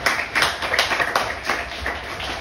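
Audience applauding: many hands clapping.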